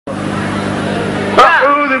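A steady hiss with a low hum, then about a second and a half in a man's voice suddenly starts, loud and close to a stage microphone.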